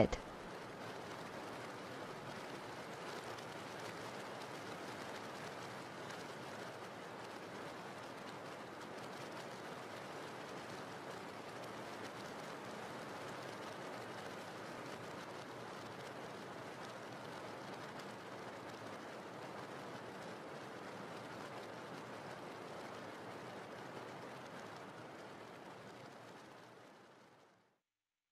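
Steady rain falling, a continuous even hiss of rain ambience, fading out near the end.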